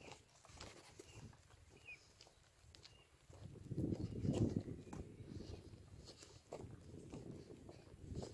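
Faint footsteps of a person walking, with a louder low rumble on the hand-held phone's microphone for a couple of seconds starting about three seconds in.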